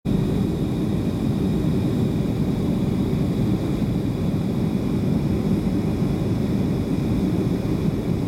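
Steady rumble of an airliner's engines and airflow heard inside the passenger cabin during the descent to landing, with faint steady high tones above it.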